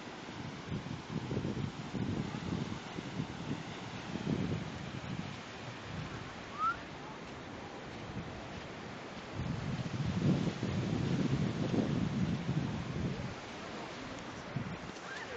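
Wind buffeting a handheld camera's microphone in uneven low rumbling gusts, strongest over the last third, over a steady hiss. A short high rising chirp comes just past the middle.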